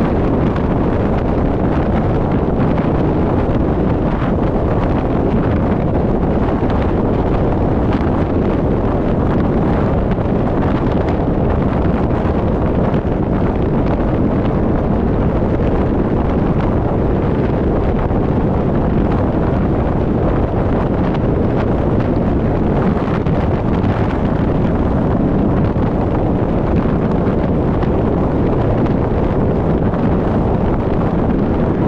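Steady wind rushing over the microphone of an action camera moving at freeway speed, mixed with tyre and road noise. It is a loud, even rush with no change.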